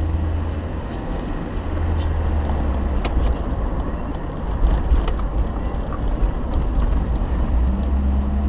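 Car cabin noise while driving with a window open: a low road rumble with wind buffeting, and a few light clicks and rattles.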